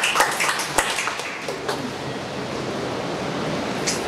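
Scattered clapping from a seated audience, a quick run of sharp claps that thins out and stops within about two seconds, leaving a steady hiss of the hall.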